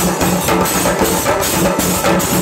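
Kerala singari melam: chenda drums beaten with sticks in a loud, fast, unbroken rhythm, with ilathalam hand cymbals clashing along.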